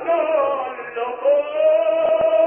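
Operatic singing with orchestra, from a 1950 live opera recording: a voice holds wavering, sustained notes with a short dip in level about a second in. The sound is narrow and dull, with nothing in the upper treble, as in an old recording.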